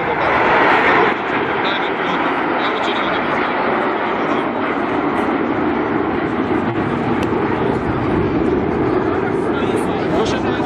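Jet engine noise from a formation of PZL TS-11 Iskra jet trainers, each with a single turbojet, flying a display. It is a steady, dense rush, loudest in the first second.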